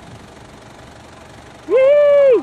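Faint outdoor background, then near the end a loud, high-pitched call from a person's voice, like a shout or whoop: it rises and then holds one note.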